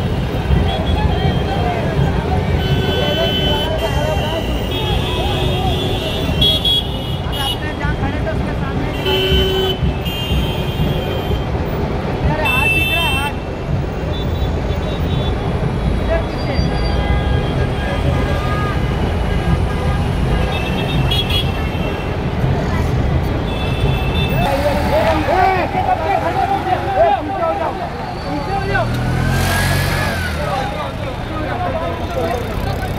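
Vehicle horns honking in short toots, one after another, over the rumble of engines in gridlocked street traffic, with a crowd's voices all around; the voices get louder near the end.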